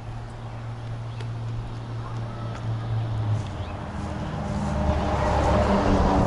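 Road traffic noise: a motor vehicle's low engine drone on a nearby road, dropping to a lower note about halfway through and growing louder toward the end, picked up by the action cam's small built-in microphones.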